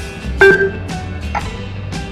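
Background music, with one short, loud electronic beep from an ICBC ATM's side key about half a second in, as the Confirm button is pressed.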